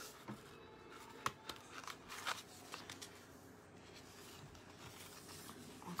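Faint rustling and light clicks of a glittered vinyl sheet and its paper being handled on a table, with a sharper click about a second in and a brief rustle about two seconds in.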